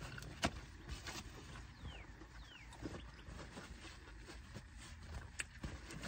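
Faint chewing and wet mouth clicks of a person eating a juicy cheeseburger: a few scattered smacks over a low steady hum.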